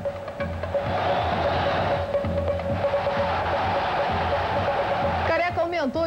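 Stadium football crowd cheering a goal: the roar swells about a second in and dies away near the end, over background music.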